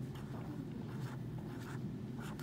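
Pen scratching across spiral-notebook paper in a run of short strokes as numerals are written.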